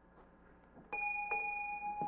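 A bell struck twice about half a second apart, its clear tone ringing on after the second strike, signalling the start of Mass.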